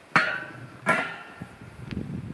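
Two sharp knocks under a second apart, each followed by a short ringing tail.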